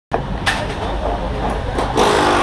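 Rally service-tent ambience: background voices over a steady low hum, with a short sharp knock about half a second in and another near the end, typical of mechanics' tools on the car.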